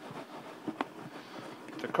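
Rainbow smelt being knocked around in a clear container of corn flour to coat them: a run of soft, irregular knocks and rustles, with one sharper knock a little under a second in.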